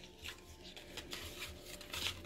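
Faint handling of a tarot card deck: soft scattered rustles and ticks of cards, a little louder near the end, over a low steady room hum.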